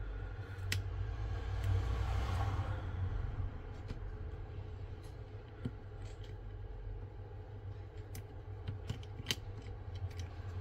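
Soft scraping and rustling as the wireless charging coil sheet is pried and lifted off a Samsung Galaxy S24 Ultra's frame with a metal pick and plastic pry tool, strongest in the first few seconds, with a few light sharp clicks of the tool.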